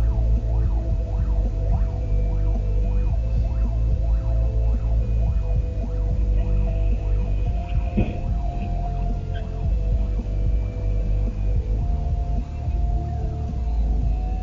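Fire engine siren sounding in quick repeated rising-and-falling sweeps as the truck passes close by, over a steady low rumble of engine and road noise. A brief sharp sound comes about eight seconds in.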